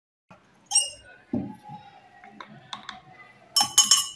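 Plastic lab apparatus being handled on a bench. A brief high squeak comes early, then a dull knock and small clicks. Near the end, a metal spoon scrapes and clinks in a plastic beaker.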